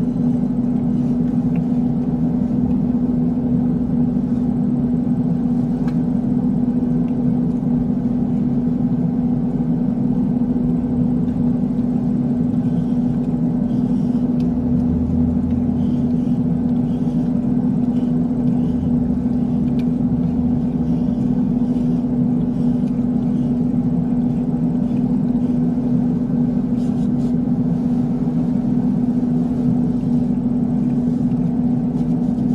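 A steady low hum with one constant tone, unchanging throughout.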